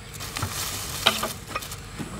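Thin plastic carrier bag crinkling and rustling as it is handled and set down on dry ground, in a run of short crackles with one sharp click about halfway through.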